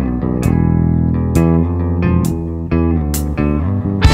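Instrumental passage of a studio-recorded rock song: bass guitar and guitar playing a riff, with a short percussion stroke about once a second.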